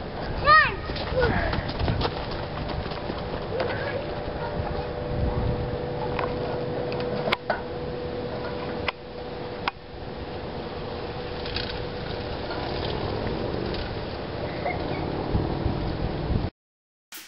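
Playground ambience with a steady low rumble of wind on the microphone and a child's high, gliding shout just after the start. A few sharp clicks come through the middle.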